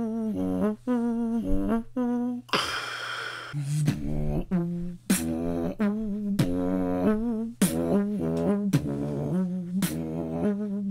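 Beatboxer humming a trumpet-like melody in short notes, about two a second, with a wavering pitch. A hissing breath sound cuts in about two and a half seconds in, and a laugh follows shortly after.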